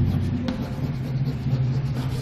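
Chalk scratching and tapping faintly on a blackboard as words are written, over a steady low room hum.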